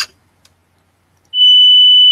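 A steady, pure electronic test tone of about 2,990 Hz, played through a loudspeaker into a microphone, starts suddenly about a second and a half in and holds at one pitch.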